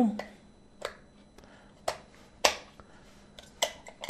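An 8mm film magazine being seated in a Cine-Kodak Medallion 8 movie camera and the camera's side door being shut: about half a dozen sharp clicks at uneven intervals, the loudest about two and a half seconds in.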